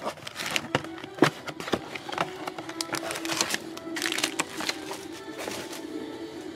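Crinkling and sharp snaps of a cardboard box and foil trading-card packs being handled, the loudest snap about a second in, over background music.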